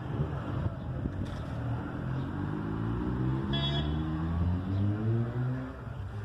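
A motor vehicle's engine running and speeding up, its pitch rising steadily until it fades near the end, with a brief high chirp about three and a half seconds in.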